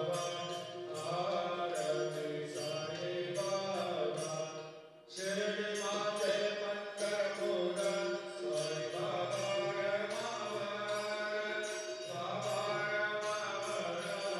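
Devotional chanting music: voices singing a chant over a steady percussion beat, dipping out briefly about five seconds in and then carrying on.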